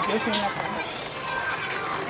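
A man's voice speaking in the open air, over outdoor street background noise.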